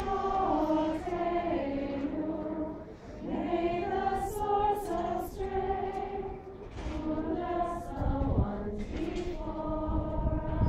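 A group of women singing a Hebrew prayer melody together, unaccompanied, in held notes with short pauses between phrases about three seconds in and again past halfway.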